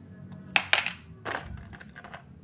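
Handling noise from a clear plastic blister pack holding small metal F-type coax connectors: two brief bursts of rattling and clicking, the louder one about half a second in and a shorter one a little after a second.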